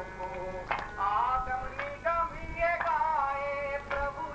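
A group of men and women singing devotional chant together, with a sharp percussive beat about once a second.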